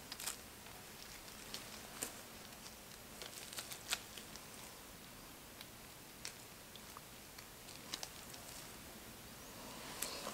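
Faint, scattered light clicks and rustles of gloved hands handling shredded soap 'grass' and small soap pieces on a work surface, the sharpest taps about 2 and 4 seconds in.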